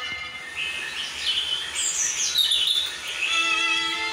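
Background violin music: a held note fades, then a quick high run climbs and falls for a couple of seconds before steady violin notes return near the end.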